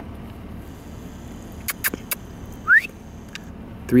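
A vehicle's engine idling, heard as a steady low hum from inside the cab. A few sharp clicks come a little under two seconds in, and one short rising squeak follows near three quarters of the way through.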